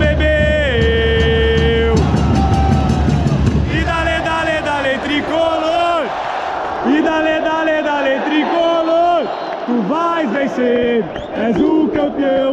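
Football supporters in the stand singing a terrace chant together close to the microphone, with long held, sliding notes. Evenly spaced rhythmic hits run under the singing for a couple of seconds early in the chant.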